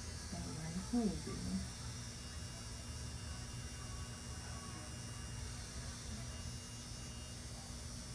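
Room tone: a steady low hum with a faint hiss, unchanging through the quiet stretch.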